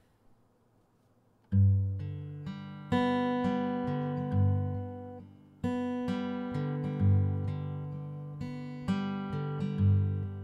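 Acoustic guitar intro: after about a second and a half of near silence, chords are struck one at a time, each left to ring and die away before the next.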